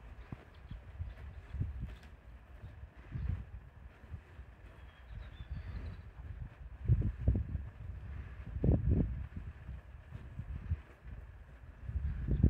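American bison grazing close by: short, low sounds come every few seconds, the strongest pair about seven and nine seconds in.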